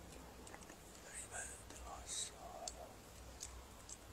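Faint whispered murmuring from a large congregation reciting silently in prayer, with scattered small clicks and rustles over a low steady hum.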